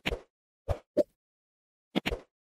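Short pop and click sound effects of an animated subscribe-button end screen: one pop at the start, then two quick pops close together about a second in, with dead silence between.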